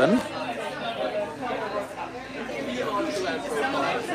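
Background chatter of many people talking at once in a room, with no one voice standing out.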